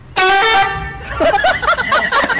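An edited-in comedy sound effect: a loud honking horn note held for about half a second, then a quick string of high squeaky chirps.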